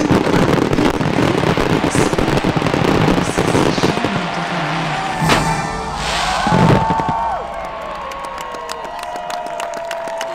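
Fireworks finale: dense crackling and bursting shells over show music, with two heavier bangs about five and a half and seven seconds in. It then thins out to scattered crackles under a held musical tone.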